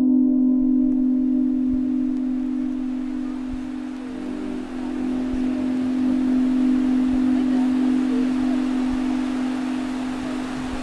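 A steady low musical drone held throughout, with the wash of ocean surf and wind fading in under it over the first couple of seconds.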